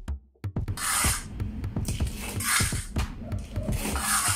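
Electronic background music with a beat, over three scrapes of a steel trowel dragging leftover concrete block mix across a concrete floor, about a second and a half apart.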